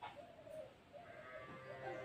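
Faint animal calls, wavering in pitch.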